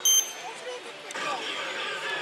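Oshi! Banchō 4 pachislot machine in its AT bonus mode: game sound effects and voice lines over a steady parlour din, opening with a short bright ring.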